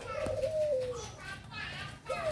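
A zebra dove (perkutut) cooing in the aviary: one drawn-out note about a second long that wavers slightly and slides down at its end, followed by fainter high sounds.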